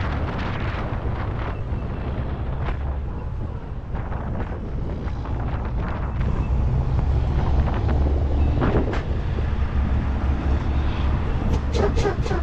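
Semi truck's diesel engine running, heard inside the cab as a steady low rumble with road and wind noise, slightly louder about halfway through. Near the end a quick series of ticks begins, about four a second.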